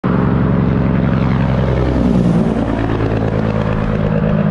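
Diesel semi truck driving along a highway with other traffic, its engine giving a deep steady drone; about halfway through the engine pitch drops as it passes.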